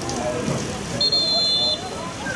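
A referee's whistle blown once, a single steady shrill blast of under a second starting about halfway in, signalling a stoppage after a player has gone down. Spectators' voices can be heard around it.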